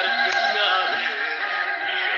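Music: a continuous melodic tune whose lead line wavers and slides in pitch.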